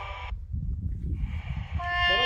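Music stops just after the start, leaving wind buffeting the microphone as a low rumble. A steady held tone begins near the end.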